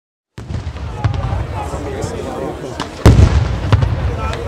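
Batteria sanseverese ground firecrackers going off in a continuous chain of low booms and sharp bangs, with the loudest cluster of bangs about three seconds in. The sound starts suddenly about a third of a second in, with crowd voices chattering under the explosions.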